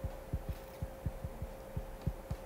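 Stylus tip tapping on a tablet screen during handwriting: a rapid, irregular series of short dull taps, about six a second, over a faint steady hum.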